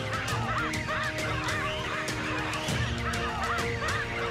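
Baboons screaming: many short, overlapping calls that rise and fall in pitch, several a second, over sustained notes of background music.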